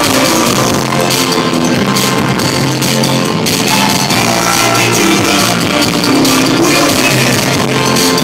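A live rock band playing loudly and steadily on electric guitars and a drum kit.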